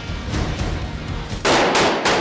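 Action-film soundtrack: a dense mix of music and effects, then two loud, sharp blasts near the end.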